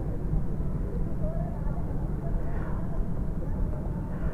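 Outdoor ambience: a steady low rumble with faint distant voices.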